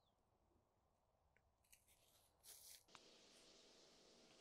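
Near silence, with a faint brief rustle about two and a half seconds in, then a faint steady hiss with a low hum.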